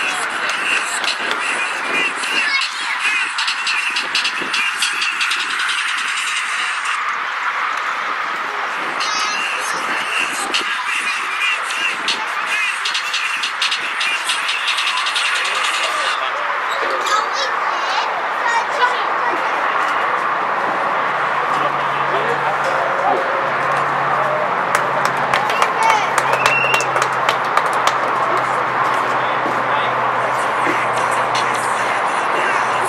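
Indistinct voices of players and people on the sideline, talking and calling out over steady outdoor background noise, with scattered sharp clicks. A low steady hum joins in about two-thirds of the way through.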